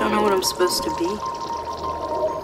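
A person's voice, a short utterance in the first second, over a steady high hum.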